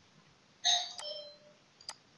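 A two-note chime, a ding followed by a lower dong, rings out and fades over about a second, with a sharp click during it and another click near the end.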